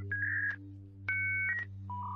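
A few short electronic beeps of different pitches, one of them two tones sounding together like a telephone keypad tone, played as a robot's 'processing' noise.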